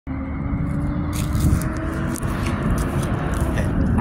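Road traffic: the steady tyre and engine noise of a car going by, with a faint tone that fades out about halfway through.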